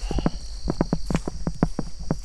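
Footsteps crunching through grass in a quick run of short clicks, with crickets trilling steadily behind.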